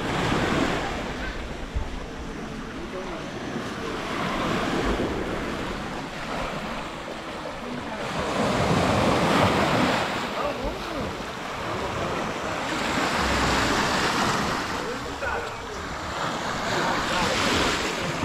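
Small waves breaking and washing up a sandy beach, the surf swelling and ebbing every four to five seconds.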